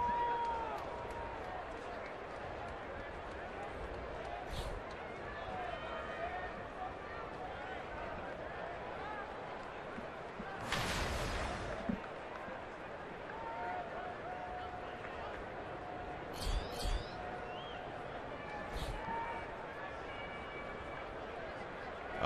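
Ballpark crowd murmur: a steady wash of many distant voices with scattered shouts and calls. About eleven seconds in there is a brief, louder burst of noise from the stands.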